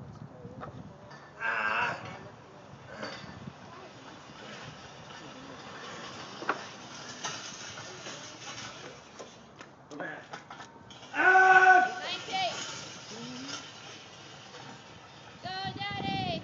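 Shouts of encouragement for a man pushing a heavy sled. A short yell comes about a second and a half in, a long held shout about eleven seconds in is the loudest, and a bending yell comes near the end, all over a steady noisy background.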